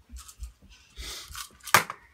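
Rustling close to the microphone, then a single sharp knock near the end as a small child sets a cup down on the wooden tabletop.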